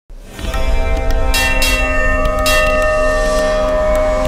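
Temple bells ringing, with sharp strikes at about one and a half and two and a half seconds in and their tones ringing on over a deep low rumble.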